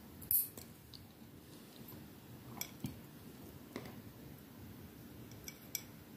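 Steel nail clippers cutting a fingernail: one sharp clip about a third of a second in, then several fainter metallic clicks.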